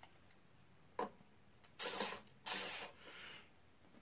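Faint handling noise of a plastic string winder being fitted onto a guitar's tuning-machine button: a click about a second in, then a few short scraping rubs.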